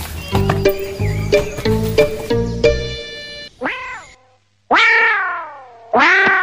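Comic background music with low drum hits, stopping about three seconds in. Then come animal-like cry sound effects: a short one falling in pitch, and after a brief gap a loud, long cry that slides down in pitch.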